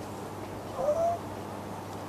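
A single short pitched cry about a second in, rising and then held briefly at a level pitch, over a steady low background hum.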